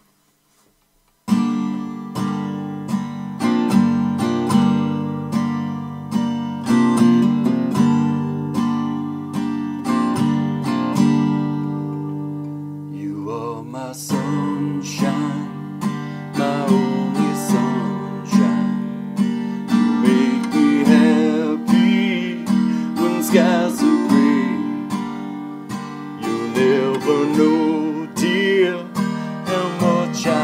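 Acoustic guitar strummed in steady chords, starting about a second in; about halfway through a man's voice comes in singing over it.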